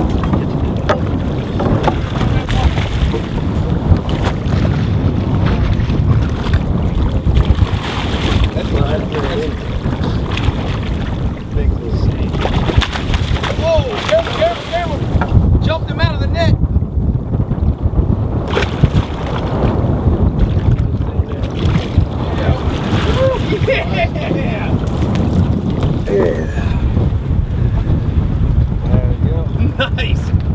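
Wind buffeting the microphone in a steady, loud rumble over open water, with a few brief voices in between.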